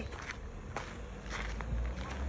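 Footsteps on a gravel-strewn driveway, a scatter of short crunching steps.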